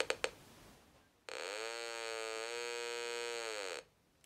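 Buzzy tone from a 555-timer audio oscillator, driven by a resistive antenna bridge's reading, through a small loudspeaker. It comes in a little after a second, sliding up in pitch, holds nearly steady with a slight dip, then slides down and stops shortly before the end. Silence means the antenna coupler's variable capacitor is tuned to the null, and the tone means it is off tune.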